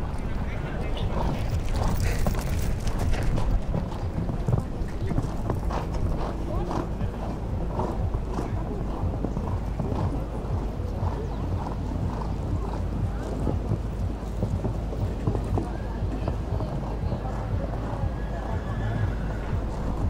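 Horse cantering on a sand arena footing: a continuous run of hoofbeats as it goes round the course and over the jumps, over a steady low rumble.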